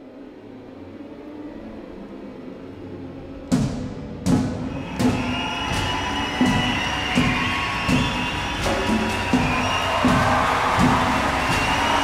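Orchestral music fading in on low sustained tones. About three and a half seconds in, heavy drum hits enter on a slow, steady beat of roughly one every 0.7 seconds, and the music grows louder toward the end.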